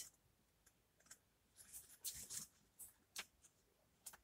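Near silence with a few faint, short clicks and paper rustles: the pages of a small paperback guidebook being leafed through by hand.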